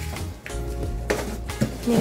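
Background music with a steady bass, and a man's voice briefly near the end.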